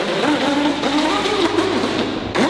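A radio-controlled boat's motor whining at speed, its pitch wavering up and down as the throttle changes.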